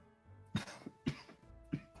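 Soft background music held on steady tones, with three short breathy sounds from a person about half a second, one second and one and a half seconds in.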